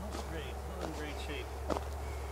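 Faint, indistinct voices over a steady low rumble, with a few light clicks, the sharpest near the end.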